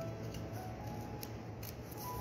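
Carving knife shaving thin slices off a wooden spoon blank, a few short sharp cuts in the second half, while the head end of the spoon is trimmed to shape.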